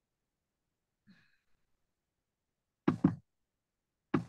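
Two quick knocks close together about three seconds in, over an otherwise quiet call line, with a faint brief sound about a second in.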